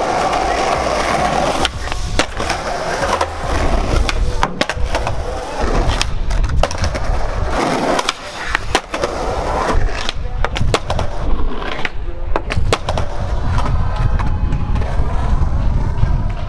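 Skateboard wheels rolling on concrete, with many sharp clacks and pops of the board as the skater does tricks and grinds on ledges.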